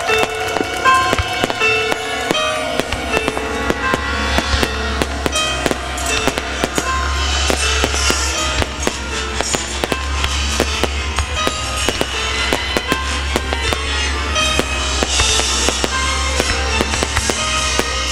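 Fireworks shells bursting, many sharp bangs in quick, irregular succession, over music.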